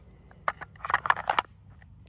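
Sharp plastic-and-metal clicks and knocks as the magazine of a Crosman DPMS SBR CO2 BB rifle is pushed back into its magazine well and seated: one click about half a second in, then a quick cluster of several clicks.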